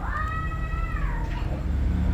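A cat meowing once: one long call, lasting a little over a second, that rises, holds, then falls.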